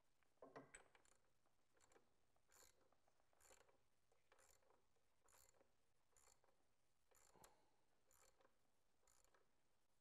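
Near silence, with a faint, even series of short clicks about once a second.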